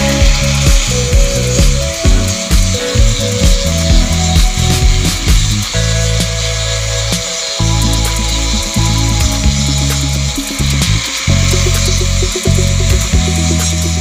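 Electric angle grinder running, its disc grinding the rough outer surface of a coconut shell half to clean it, with background music playing over it.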